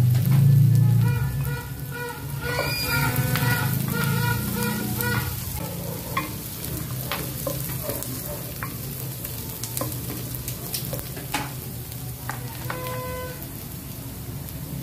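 Chopped onion and garlic sizzling in hot oil in a nonstick pot while a silicone spatula stirs them, with a few light taps of the spatula against the pot.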